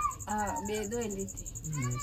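A person's voice talking in short phrases, with a faint steady high chirring of insects behind it.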